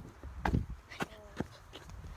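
A person jumps off a wooden ramp and lands on a dirt trail with a thud about half a second in, followed by uneven footsteps on dirt and dry leaves.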